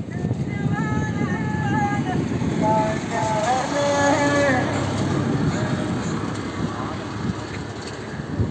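A person's voice in drawn-out pitched notes, from shortly after the start to about halfway through, over a steady low outdoor rumble.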